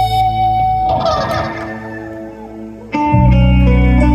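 Live rock band music led by electric guitar: a held chord thins out and drops in level about a second in, then a loud full chord with heavy bass comes in suddenly about three seconds in.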